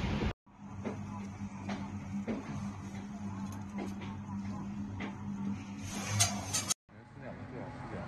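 Street ambience of city traffic with a steady low hum, scattered faint clicks and a brief louder rush about six seconds in. Faint voices mix in, and the sound cuts off abruptly twice as clips change.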